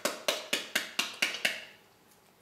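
Metal ice cream scoop pounding on the back of a pomegranate quarter to knock the seeds loose into a bowl: a steady run of sharp knocks, about four a second, that stops shortly before the end.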